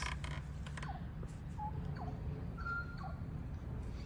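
Faint short squeaky chirps and one brief high whistle, small bird calls, over a low rumble of wind on the microphone.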